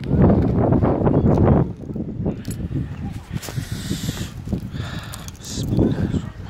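Gloved hand scraping and brushing packed snow off a motorcycle's handlebar switches and ignition, in irregular crunching and rustling, loudest in the first second and a half and then quieter. The engine is not running; the switchgear is frozen.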